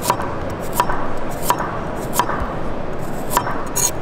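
ShanZu chef's knife slicing a carrot into rounds on a wooden cutting board, the blade knocking the board in an even rhythm about once every 0.7 seconds over steady background noise. A sharper, higher click comes near the end.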